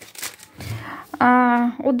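Rustling and crinkling of a plastic shopping bag and groceries being handled, then about halfway in a woman's voice with a drawn-out sound, running on into speech.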